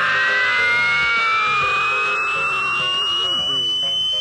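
Comic film soundtrack: a single clean, whistle-like tone rises slowly and steadily over a dense musical backing.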